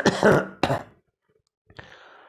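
A man clearing his throat with coughs: two short bursts in the first second.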